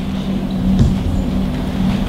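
Steady low electrical hum from the stage amplification, with a light knock a little under a second in.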